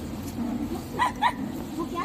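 A young woman laughing, with two short high-pitched squeals of laughter about a second in, over low chatter of people in the room.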